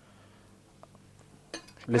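Quiet room tone with two faint light clicks about a second in, from gloved fingers working over a porcelain serving dish. A voice starts near the end.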